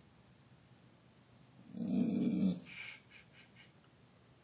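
A dog's low growl, lasting under a second about halfway through, followed by a short breathy puff.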